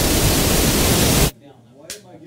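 Loud, steady static hiss from an audio feed losing its signal, which cuts off suddenly about a second in, followed by a single click near the end. The hiss is typical of a wireless microphone gone out of range of its receiver.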